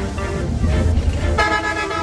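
Vehicle horn honking once near the end, a short pitched blast of about half a second, over background music and a low rumble of the bus running.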